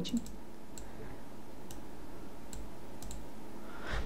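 About half a dozen faint, irregularly spaced clicks of computer input during work in a drawing program, over a low steady background hum.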